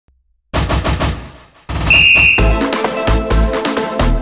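Intro jingle: a quick rattle of sharp strikes that fades away, then a short high whistle-like tone and upbeat electronic music with a steady beat.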